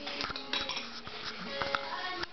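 Dishes and cutlery clinking: a scatter of sharp, irregular clinks, as of a spoon and bowl being handled.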